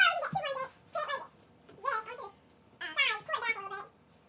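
A high-pitched voice speaking in short bursts with brief pauses between.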